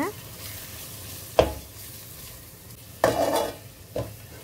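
A metal spoon stirring spice powders into onion masala frying in an aluminium pot, over a steady faint sizzle. The spoon knocks sharply against the pot about a second and a half in, scrapes through the mixture near the three-second mark, and taps the pot again at the end.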